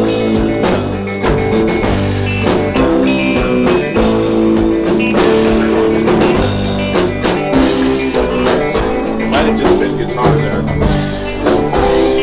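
Rock band music: electric guitar, bass and drum kit playing together, with a steady drum beat under sustained guitar and bass notes.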